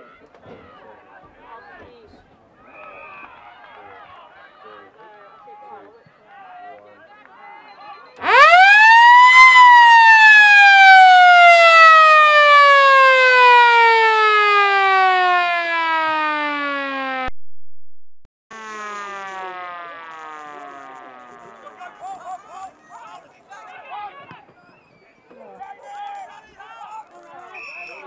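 Motor-driven siren at a football ground winding up to a loud wail in about a second, then winding down slowly in pitch over about nine seconds, the signal for the end of a quarter. It cuts off sharply, then its low tail returns faintly under crowd chatter.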